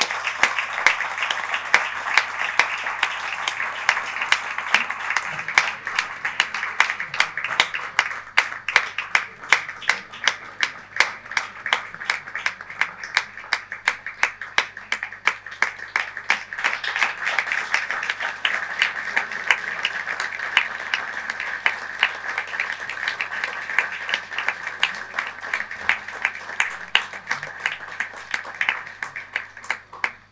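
Audience applauding, many people clapping without a break. The applause thins to fewer, more distinct claps around the middle, then fills out again in the second half.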